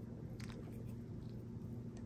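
Quiet room tone with a low steady hum and a few faint soft clicks about half a second in, from resin diamond painting pens being handled.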